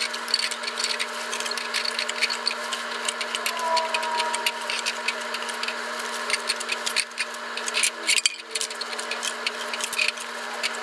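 Plastic cups clicking and tapping as they are pulled one by one from a nested stack and set down on a cup pyramid, with many short light clicks throughout.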